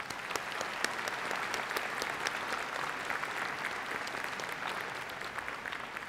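Theatre audience applauding, a steady patter of many hands clapping that eases slightly near the end.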